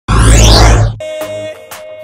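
A loud whooshing transition sound effect with a deep rumble and sweeping pitches lasts about a second. Then music comes in quieter, with a held note and a couple of sharp percussion hits.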